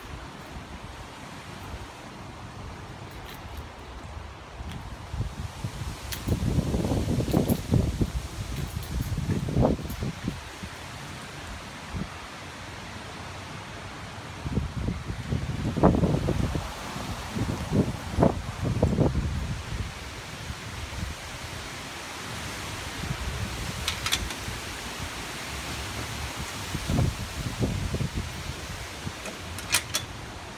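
Wind gusting over a phone microphone that is being carried about, with low rumbling buffets in three spells and rustling handling noise, plus a few sharp clicks in the later part.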